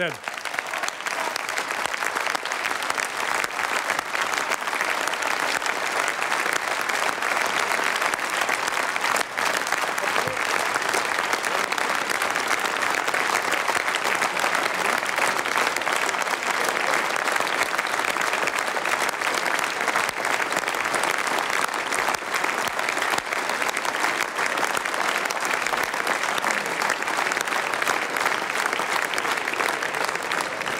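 Sustained applause from a large assembly, many people clapping at once with voices mixed in. It runs unbroken and eases slightly near the end.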